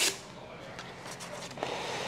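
Faint rustle and handling noises at a workbench, with a brief high hiss right at the start and a couple of light ticks near the end, over quiet shop room tone.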